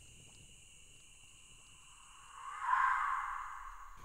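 Near silence for about two seconds, then a soft whoosh that swells and fades away.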